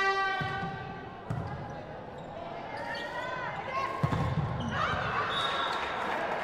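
Volleyball being struck about three times in a rally: the serve just after the start, a pass about a second later and a harder hit around four seconds in, with players' shouts between them. A long held note ends just after the start.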